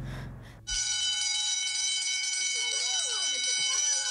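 A building fire alarm ringing steadily, starting abruptly just under a second in. Voices call out in the background from about halfway.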